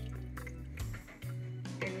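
Background music with a steady low bass line, over the faint sound of thick blended beetroot juice being poured from a glass blender jug into a glass pitcher.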